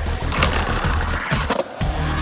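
Skateboard wheels rolling across a concrete bowl, a rough rush of noise through the first second and a half, with electronic dance music underneath that drops out briefly near the end.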